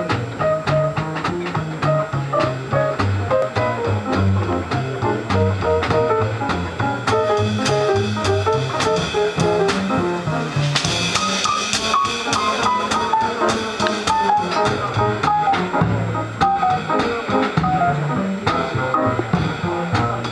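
Live jazz piano trio playing swing: acoustic piano over an upright double bass walking a steady line of low notes, with a drum kit behind them. A brighter cymbal wash joins about eleven seconds in.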